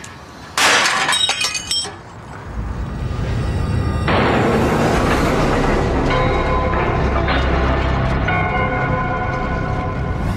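A heavy drop weight strikes a carbon steel sample frozen in liquid nitrogen about half a second in: one sharp crash with metallic ringing as the steel, made brittle by the cold, shatters. Music then builds and plays loudly from about four seconds on.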